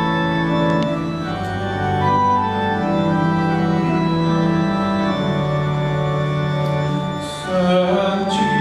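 Church organ playing held chords that change every second or two, the introduction to a sung psalm antiphon, with a brief dip in loudness about seven seconds in.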